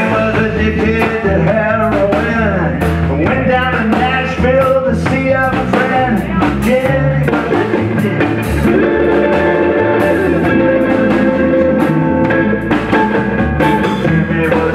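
Live blues trio playing: electric guitar over upright bass and drum kit, with bending guitar notes.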